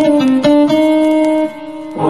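Hammond Elegante XH-273 electronic organ playing a melodic phrase of held notes with a rich, many-overtone voice, briefly dropping in volume near the end.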